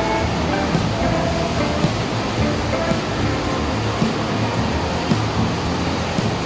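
Steady rush of water in water-slide run-out channels, with background music mixed in.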